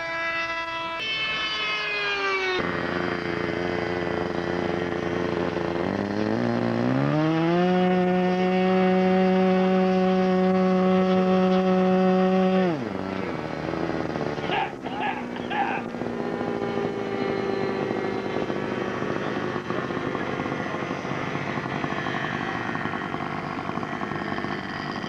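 Model airplane engine passing overhead with a falling pitch. Then a model airplane engine running on the ground, revving up about six seconds in, holding high revs for several seconds and cutting off abruptly about halfway through. After that, only background noise and a faint steady engine note.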